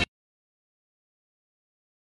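Silence: the electronic outro music cuts off suddenly right at the start, and nothing follows.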